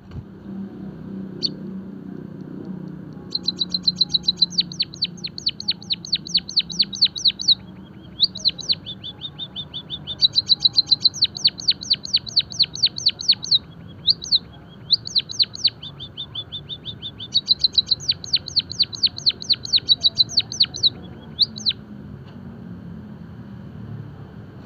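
White-headed munia singing long runs of rapid, high, thin notes, each slurring downward, about six a second. The runs come in four bouts with short breaks between them, and the song is a trained 'gacor' song filled in with canary-style phrases. A faint low hum lies underneath.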